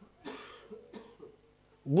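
A person coughing: one short cough about a quarter second in, followed by a few fainter ones.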